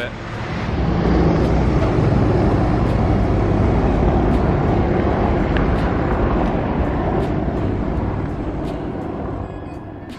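Two helicopters flying overhead: a steady rotor and engine drone that builds over the first second and slowly fades toward the end.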